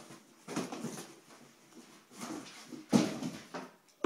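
Cardboard rustling and scraping in several short bursts as a boxed appliance is pulled out of a cardboard shipping box. The sharpest, loudest scrape comes about three seconds in.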